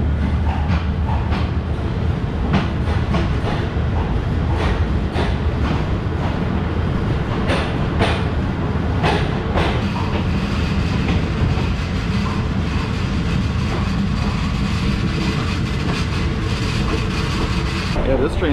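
Passenger train of the State Railway of Thailand rolling along, heard from inside a carriage: a steady low rumble with the clack of wheels over rail joints, and a run of sharper clicks about halfway through.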